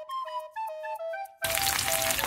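Light background music with a simple melody; about one and a half seconds in, the loud sizzle of sliced garlic frying in hot oil in a pan suddenly comes in under the music.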